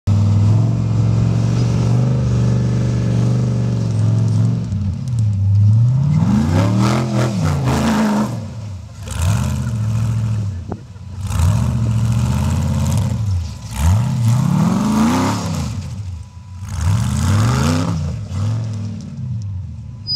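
Off-road buggy engine running steadily, then revved up and down over and over, about six rises and falls two to three seconds apart, as the buggy drives on sand.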